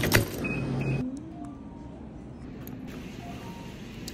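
A microwave oven being worked: a low hum with a sharp click of the door, then two short high beeps from the keypad, all within the first second. After that only a quieter steady room background.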